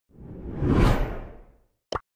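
Logo-reveal whoosh sound effect with a low rumble, swelling to a peak about a second in and fading out, followed by a short sharp hit near the end.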